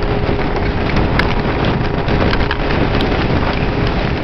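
Motorboat under way at speed: wind buffets the microphone and water rushes and spatters from the wake, over the steady drone of a 125 hp Mercury two-stroke outboard. Scattered sharp ticks run through it.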